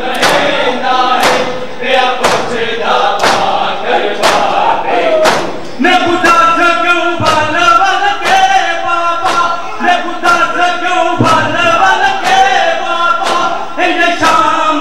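Crowd of men doing matam: many hands striking chests together in a steady beat, while voices chant a noha (lament) in unison over it. The sung voices grow stronger about six seconds in.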